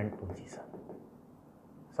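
Chalk writing faintly on a blackboard in a quiet room. The tail of a spoken word comes at the start, and a soft breathy sound about half a second in.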